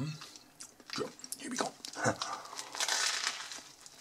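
Close-up chewing of a mouthful of döner in toasted sesame flatbread, with irregular crisp crunches of the crusty bread, loudest about three seconds in.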